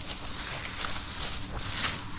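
Dry pampas grass stalks rustling and crackling as a rope is pulled tight around the base of the clump, with a few sharper crackles near the end.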